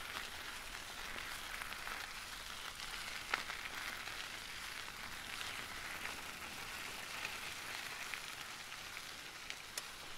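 Tyres of a BTWIN Riverside 120 hybrid bike rolling on a tarmac path: a steady, fairly quiet hiss with a few sharp clicks, the loudest about a third of the way in.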